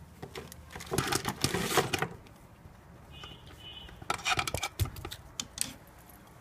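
Clicking and rattling of rubber antennas being handled and screwed onto the threaded metal connectors of a signal jammer. The clicks come in two bursts, about a second in and again about four seconds in.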